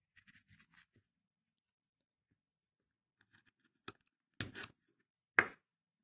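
A screwdriver and a thin metal pick scraping and clicking against a dishwasher pump's plastic housing and worn graphite bushing while working the bushing loose. Faint scratching comes first, then a few sharp clicks later on, the loudest near the end.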